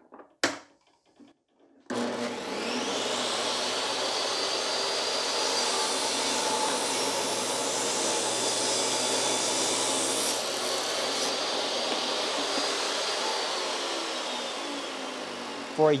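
DeWalt table saw switched on about two seconds in: the motor spins up with a rising whine, then runs steadily while a thick, dense piece of wood is fed through the blade. It runs at full speed off a portable power station's inverter without bogging down, then winds down with falling pitch near the end.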